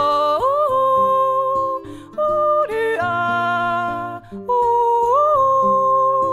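A woman sings wordless yodel-style notes over a picked nylon-string classical guitar. She holds long notes and leaps sharply upward in pitch twice, about half a second in and again about five seconds in.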